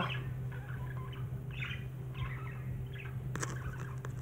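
A pet green-cheeked conure, right at the microphone, gives short scratchy chirps several times, with a sharp click about three and a half seconds in. A steady low hum runs underneath.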